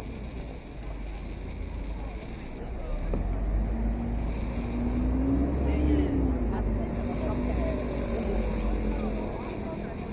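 City street sounds: a motor vehicle hums past, its pitch rising and then falling over a few seconds, over a low rumble and passers-by's voices.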